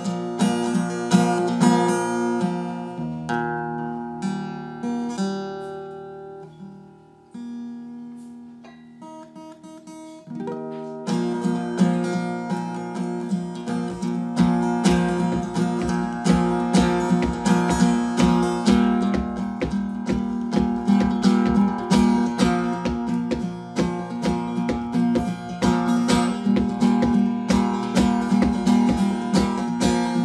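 Solo steel-string acoustic guitar. It opens with slow, ringing chords and notes that fade away, then about eleven seconds in settles into a steady, driving strummed rhythm with a regular low pulse on the beat.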